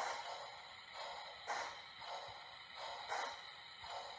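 Lionel HO scale Berkshire model steam locomotive crawling along the track at very slow speed: a faint sound that swells softly about every second and a half.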